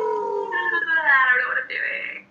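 A voice holding one long, howling note, steady at first and then rising in pitch about halfway through.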